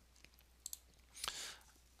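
A couple of faint computer clicks about two-thirds of a second in, followed by a short, soft rush of noise near the middle.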